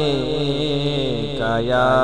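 Male voice reciting a naat, holding long melismatic notes. The line dips just past halfway, then a new, higher note is held.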